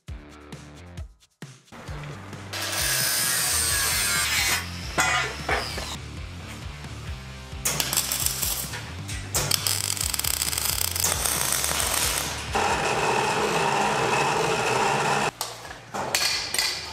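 Background music with a steady bass line, over long stretches of crackling hiss from welding steel, broken by a few short pauses.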